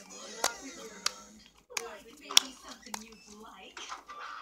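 Cartoon voices played from a screen and picked up by a microphone, broken by a few sharp clicks, the loudest about two and a half seconds in.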